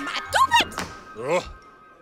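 Cartoon characters' gibberish vocal exclamations, swooping up and down in pitch, over background music with held notes. A short thunk comes about half a second in.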